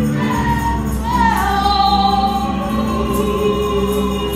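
Gospel song sung by a small vocal group in harmony, with long held notes over steady bass and instrumental backing.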